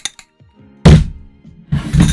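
Handheld microphone struck by hand twice, giving two heavy thumps about a second apart, the second longer than the first.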